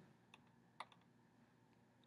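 Near silence, with two faint short clicks, about a third of a second in and again near a second in.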